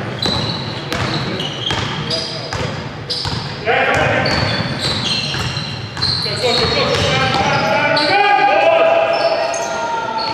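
Basketball game in a sports hall: the ball bouncing on the court amid players' shouts and calls, echoing in the large hall.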